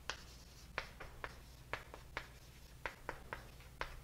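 Writing on a lecture board: short, sharp strokes and taps at an irregular two or three a second, over a faint steady low hum.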